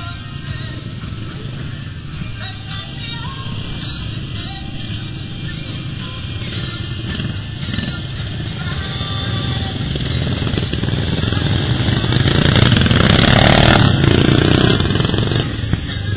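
Music playing over the steady engine noise of racing lawnmowers. The engine noise grows louder toward the end, then drops just before it.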